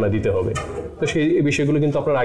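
Speech only: a man talking in Bengali.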